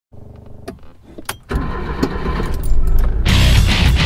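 Clicks of a car ignition key, then a car engine starting and running, which suddenly swells with loud electric-guitar rock music a little before the end.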